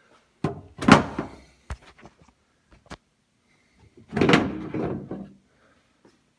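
Knocks and rustling from someone moving about inside a Jeep CJ5's cab under a vinyl soft top. There is a loud knock with rustling about a second in, a couple of light clicks, then a longer, louder bump and rustle around four seconds in.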